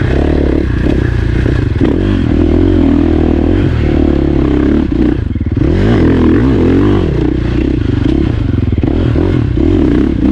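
KTM dirt bike engine running under changing throttle as it is ridden along a rough dirt trail. The revs fall off briefly about halfway through, then rise again.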